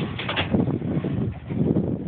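Polaris RZR XP 900 side-by-side's twin-cylinder engine running at low speed as the machine drives down off a trailer: a low, uneven rumble that swells twice.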